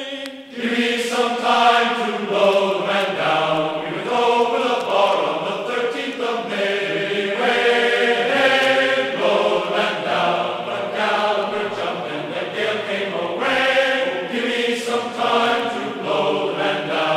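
Classical choral music: a choir singing held notes in several parts.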